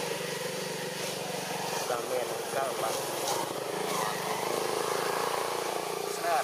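Background voices of people talking over a steady low motor hum; the hum drops away for about a second and a half in the middle, then returns.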